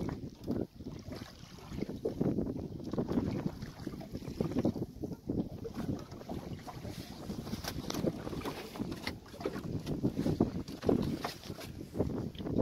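Wind buffeting the microphone in uneven gusts, over water lapping against the hull of a small open boat drifting at sea, with a few light knocks.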